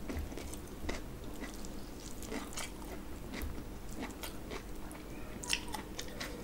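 Close-miked chewing of rice and mutton, a string of short wet mouth clicks and smacks, with a sharper click near the end.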